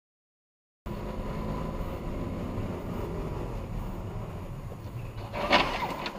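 Dashcam recording: after a second of dead silence, steady car engine and road noise starts abruptly, then a short, loud crash near the end, a scooter colliding with a taxi.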